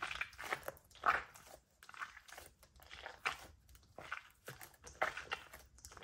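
Squishy toy squeezed over and over in two hands, giving a run of short, soft crackly squish sounds at irregular intervals, roughly one or two a second.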